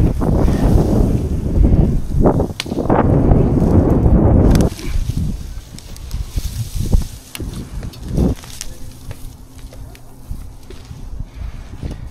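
Fir boughs and needles rustling and brushing right against the microphone, loud and rough for the first four to five seconds. After that the sound turns quieter, with a few scattered clicks and knocks from branches and gear.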